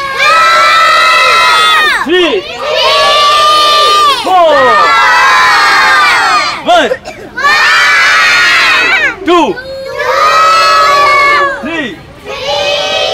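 A group of young children shouting together in chorus: five long, drawn-out shouts of about two seconds each, with short breaks between them.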